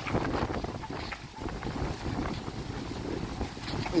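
Wind buffeting the camera microphone, an uneven low noise, with faint voices of people in the background.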